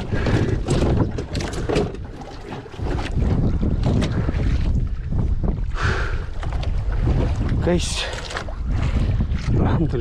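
Wind buffeting the microphone on an open boat, with repeated knocks and clatter on the wooden deck as a freshly gaffed yellowfin tuna is brought aboard. A brief voice sounds about eight seconds in.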